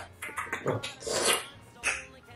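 A person's wordless, animal-like vocal sound: breathy at first, then a rougher voiced stretch peaking about a second in, with a short burst near the end.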